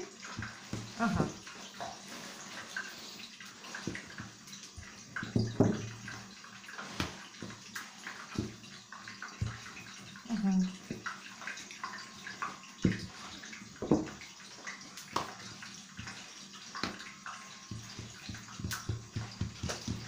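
Wooden rolling pin working oiled dough on an oilcloth-covered table: soft rubbing and rolling, with scattered light knocks as the pin and hands press and shift the dough.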